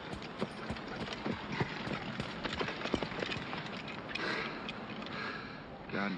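Running footsteps on sand: irregular footfalls over a steady hiss of wind, with a louder rush of wind about two-thirds of the way through.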